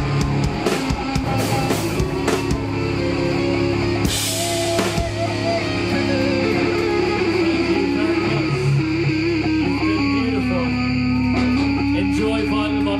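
Live grunge rock band playing: distorted electric guitar and bass over drums, with a cymbal crash about four seconds in. The drumming then thins out while the guitars hold long, ringing notes, one sliding down in pitch near the end.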